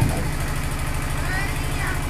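A steady low mechanical hum with an even, rapid throb, heard in a pause of the amplified speech.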